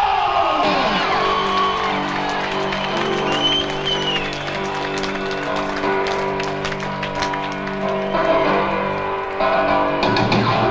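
Live rock band heard from the audience: a note slides down in pitch in the first second, then a chord is held with scattered drum hits and crowd noise, and the full band with guitar and drums comes in near the end.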